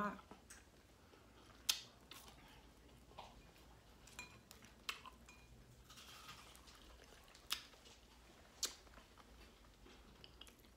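Mostly quiet room with about six faint, sharp clicks at irregular intervals, the loudest a couple of seconds in.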